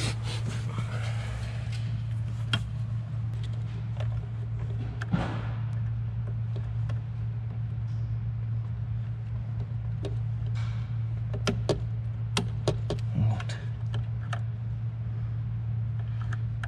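Plastic interior trim and wiring connectors being handled and pressed into place: scattered sharp clicks and short rustles over a steady low hum.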